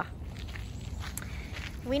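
Footsteps on a gravel trail, faint, over a low steady rumble.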